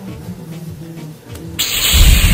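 Soft background music with held notes, then near the end a sudden loud hissing blast with a low rumble under it: a beam-zapping sound effect for a toy ghost-busting weapon.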